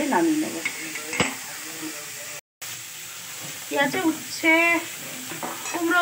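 Vegetables stir-frying in a wok: a steady sizzle with a spatula stirring through them, and one sharp tap of the spatula against the pan about a second in. The sound cuts out for a moment near the middle, then the sizzle carries on under a voice.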